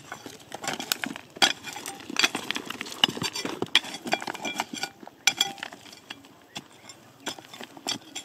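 A long metal blade digging and prying in stony, gravelly soil: irregular clinks and knocks of metal striking rocks, with stones scraping and rattling.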